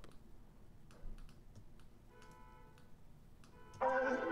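Scattered faint computer-mouse clicks while tracks are rearranged, with faint held notes coming in about halfway. Just before the end the hip-hop beat starts playing back loudly.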